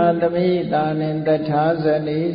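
A man chanting Pali in a slow Buddhist recitation, drawing out each syllable on long held notes.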